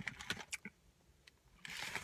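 Paper takeout bag handled, giving a few brief crinkles and clicks at the start, then a near-silent pause with faint rustling near the end.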